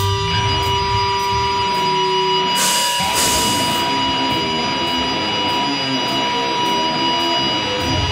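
Guitar amplifiers ringing on stage with steady held feedback tones and some bass notes between songs of a live hardcore set; a cymbal crash about three seconds in, then light cymbal ticks about twice a second.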